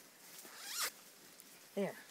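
A jacket zipper being pulled open in one quick stroke a little under a second in, rising in pitch and ending sharply as the jacket is unzipped to come off.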